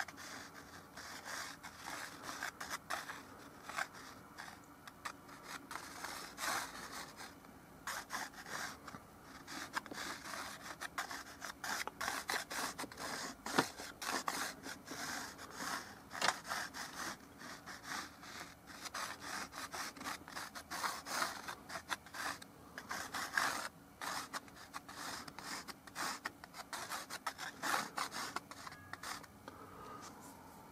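A stick of white chalk scratching and rubbing across a toned canvas panel in many short, irregular strokes, sketching the outline before painting.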